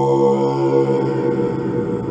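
Tibetan Buddhist tantric chanting: a held chanted note with a stack of steady overtones that breaks up about a second in and fades away.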